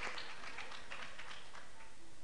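Audience applause dying away, thinning to a few scattered hand claps that stop shortly before the end.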